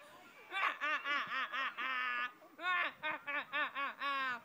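A girl laughing hard in quick, repeated high-pitched bursts: one long fit from about half a second in, a brief break a little after two seconds, then a second fit.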